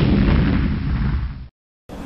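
Explosion-like boom from a TV channel's logo sound effect, rumbling and fading away, then cutting off about a second and a half in.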